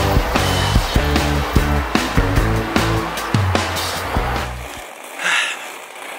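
Background music with a steady beat and heavy bass, stopping about four and a half seconds in and leaving a quieter stretch near the end.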